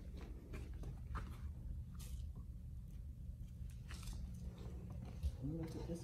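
Quiet indoor ambience: a steady low hum with scattered faint clicks, and a faint distant voice near the end.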